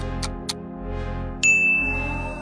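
Game-show style sound effects over a steady music bed: quick ticking at about four a second stops about half a second in. About a second and a half in, a single bright ding sounds and rings on, marking the reveal of the vote results.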